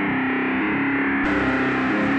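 Trap metal instrumental beat: a distorted, effects-laden guitar riff repeating steadily, with a deep bass coming in a little past halfway.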